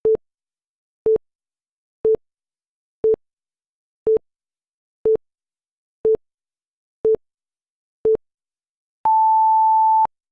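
Electronic countdown timer beeps: nine short low beeps one second apart, then one longer, higher beep marking the end of the countdown.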